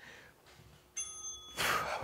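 A single bright metallic ding about a second in, ringing briefly, followed near the end by a short burst of hiss.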